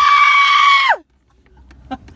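A loud, high-pitched scream, sliding up at the start, held steady for about a second, then falling away; the sound cuts to dead silence right after.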